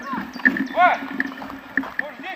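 A short fragment of a man's voice over the running noise of a bicycle ridden along a forest track, with scattered light clicks and rattles.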